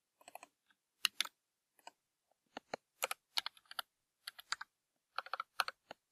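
Computer keyboard typing: soft, irregular keystrokes, some in quick runs of several, with short pauses between.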